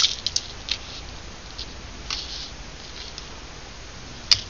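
A few light clicks and taps in the first second as a rhinestone chain and paper tags are handled on a tabletop, followed by a soft rustle of paper about two seconds in.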